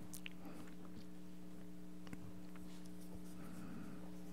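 Quiet room tone with a steady low hum, over which come faint footsteps and a few soft clicks and rustles as a man walks up to the pulpit.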